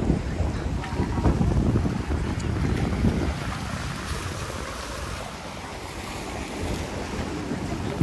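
Wind buffeting the microphone in uneven gusts over the wash of sea waves breaking on shoreline rocks.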